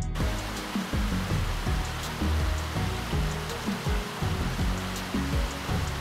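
Small river rushing over a low weir, a steady rush of water that starts and stops with this shot. Background music plays along underneath.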